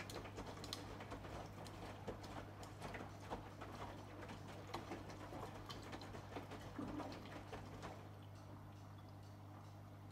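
AEG Lavamat Protex front-loading washing machine in its wash phase, the drum tumbling wet laundry: irregular soft clicks and patter of clothes and water over a steady low hum. The tumbling eases off about eight seconds in, leaving the hum.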